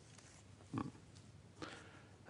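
A pause in a man's talk: quiet room tone with one brief, low throaty grunt about a second in.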